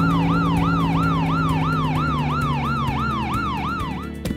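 Ambulance siren in a fast repeating wail, about three pitch sweeps a second, with a low steady drone beneath it that fades out near the end.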